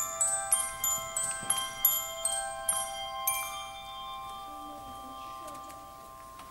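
A handbell choir ringing a quick run of bell notes, about three strikes a second, which ends about three seconds in; the last notes ring on and slowly fade in the church's reverberation.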